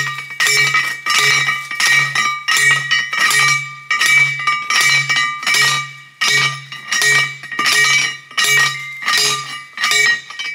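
Manual post driver pounding a steel T-post into the ground: a steady run of ringing metal clanks, about one and a half a second.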